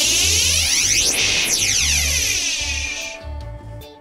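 Background music with a steady low beat, under an electronic sweeping sound effect whose many tones glide down and back up before it fades out near the end.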